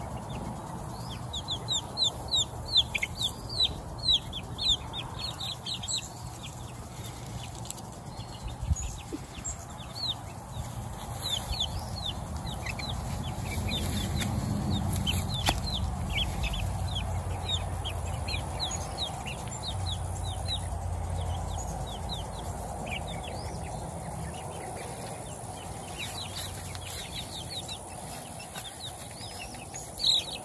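Young chicks, about three to four weeks old, peeping: many short, high, falling peeps. They come in quick runs in the first few seconds and again around the middle, then more scattered. A low rumble sits underneath, strongest in the middle.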